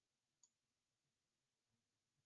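Near silence, with one very faint click about half a second in.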